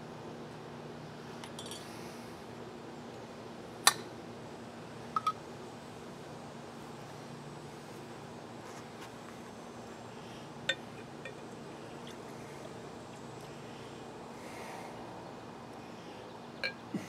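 Glass mason jars and their metal lids clinking as they are handled and set down on a wooden board: one sharp clink about four seconds in, a quick double clink a second later, and two lighter ones near the eleven-second mark.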